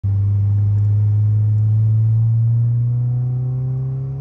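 9th-generation Honda Civic Si's 2.4-litre K24 four-cylinder with a Yonaka 3-inch exhaust and catless downpipe, heard from inside the cabin pulling under load as a deep steady note whose pitch creeps slowly upward. About three seconds in the note eases off and grows quieter as the throttle is lifted for a gear change.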